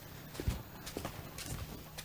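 Footsteps of two people walking up steps: a few soft, irregularly spaced knocks.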